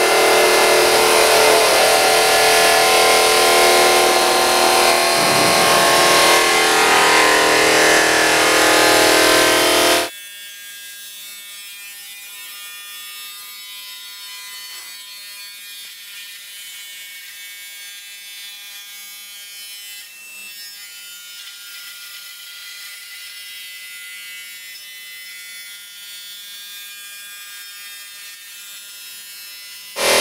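Water-cooled stone miter saw blade running and cutting along clamped stone parts, loud and steady. About ten seconds in, the sound drops abruptly to a much quieter, thin high whine.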